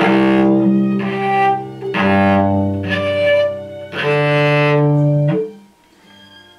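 A cello bowed in three sustained notes of about a second and a half each, the last stopping shortly before the end. They are natural harmonics at the quarter-string node, each sounding two octaves above its open string.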